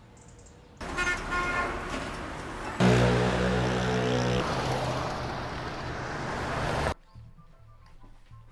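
Street traffic noise with car horns honking. There are short higher toots about a second in, then a long, lower horn blast from about three seconds in lasting a second and a half, over the steady noise of passing traffic, which cuts off suddenly near the end.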